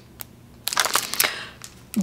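Clear plastic packaging crinkling and clicking as a plastic case of small glitter pots is handled. A single click comes first, then a second or so of crinkling, then a few light clicks near the end.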